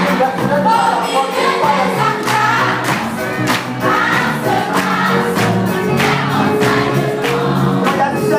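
A choir singing a gospel song in chorus, with instrumental accompaniment and a steady percussive beat.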